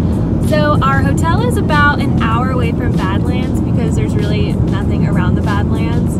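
Steady road and engine noise inside a moving car's cabin, with a woman's voice over it, mostly in the first half.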